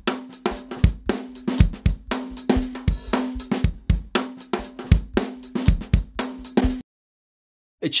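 A recorded drum-kit loop played back, automatically panned from left to right, with the track's pan law set to −6 dB so that it dips 6 dB as it passes the centre. The beat cuts off suddenly about a second before the end.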